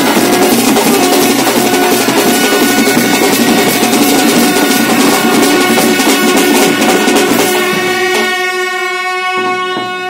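A festival band of brass trumpet, double-headed drums and hand cymbals playing loud, dense rhythm. About eight seconds in, the drumming stops and the trumpet holds one long note.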